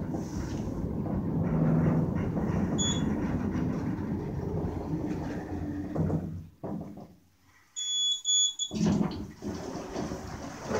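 KONE hydraulic elevator cab travelling with a steady low rumble that stops after about six and a half seconds, with a brief high beep about three seconds in. Near eight seconds a high electronic chime sounds in short pulses as the car arrives.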